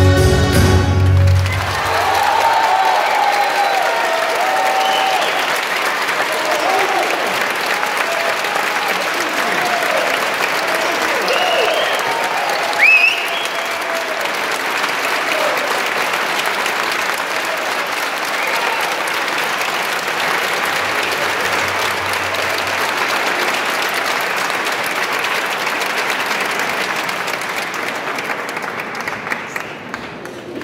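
The last notes of dulzainas and drums stop about two seconds in, and an audience breaks into long applause with cheers and whoops, thinning out near the end.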